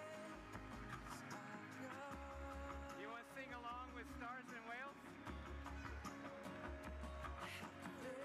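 Whale song played back set to music with a beat: long held tones, a run of quick warbling up-and-down glides about three seconds in, over a pulsing low bass.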